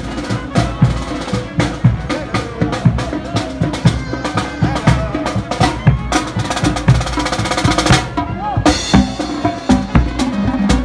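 Marching band playing as it parades past, the drums to the fore: bass drum and snare strokes keep the beat under brass, with a quick snare roll about seven seconds in and a cymbal crash soon after.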